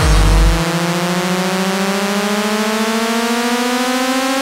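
Hardcore techno break: one deep kick-drum hit, then a single sustained synthesizer tone gliding slowly and steadily upward in pitch with the beat dropped out, building toward the next drop.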